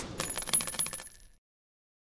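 Sound effect of many small metal pieces clinking and tinkling as they fall, with a bright ring, in quick succession and dying away after about a second and a half: the sound of spent shell casings dropping onto a hard floor.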